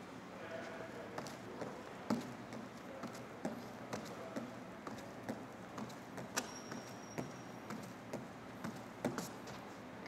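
Faint soft taps about twice a second as a gymnast's hands strike a leather-covered floor pommel trainer while he swings circles along it.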